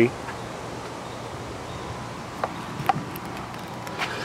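Steady background hiss with two faint clicks about half a second apart midway through, as an RV's exterior storage compartment door is unlatched and swung open.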